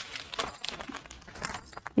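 Cotton saree cloth rustling and bangles clinking softly as a saree is picked up and handled, in irregular faint rustles with a few light clinks.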